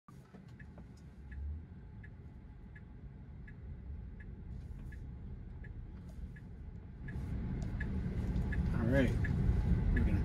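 Tesla Model 3 turn-signal indicator ticking steadily, about once every three-quarters of a second, inside the cabin. Low road and tyre noise grows louder from about seven seconds in as the car pulls away into the turn.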